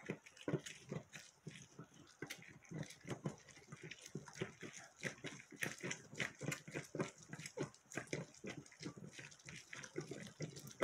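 Orange halves twisted and pressed by hand on a stainless steel citrus reamer: a rapid, irregular run of wet squelching and squishing as the fruit is ground against the ridged cone.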